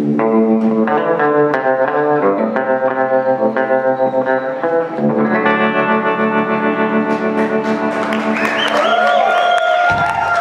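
Live band playing: effects-treated electric guitar picking a repeated pattern of notes over a held chord. Near the end the sound swells into wavering, pitch-sweeping tones that hold as the song closes.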